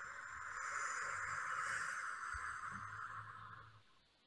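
A long, slow exhale blown out through the mouth: a steady breathy hiss that fades out near the end. It is the counted out-breath of a square-breathing exercise.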